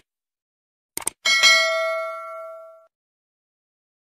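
Subscribe-button animation sound effect: two quick mouse clicks, then a bright notification-bell ding that rings and fades out over about a second and a half.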